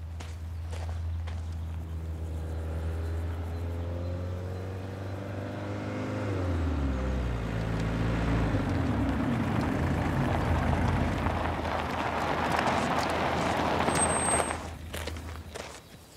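A van driving up a gravel drive and coming to a stop. Its engine note falls in pitch about six seconds in, then tyre noise on the gravel builds and cuts off abruptly near the end as the van halts.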